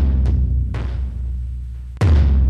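Cinematic logo-intro music: a deep, sustained boom fading slowly, with two lighter drum hits ringing out over it and another heavy hit right at the end.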